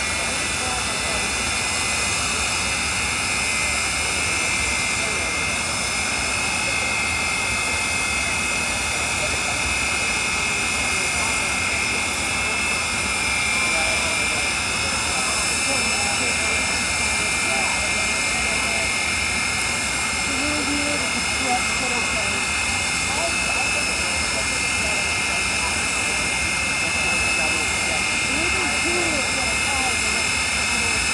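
Jet turbine of the Aftershock jet-powered drag vehicle running steadily at the starting line: a constant high whine over a steady rush of exhaust noise, with crowd chatter underneath.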